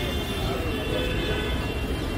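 Busy city road traffic: a steady rumble of car and taxi engines and tyres, with faint voices of passers-by mixed in.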